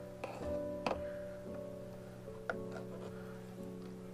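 Soft background music with sustained, guitar-like chords. Two light clicks, about one second in and again midway, as a paint tube is set down on the table.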